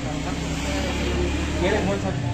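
Low, steady engine rumble of a motor vehicle going by in the street, easing near the end as a voice starts speaking.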